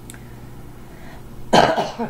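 A woman coughing: one sharp cough about a second and a half in, with a smaller second one right after it.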